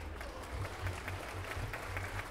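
Audience applauding: many hands clapping at once, breaking out suddenly and holding fairly quiet and even throughout.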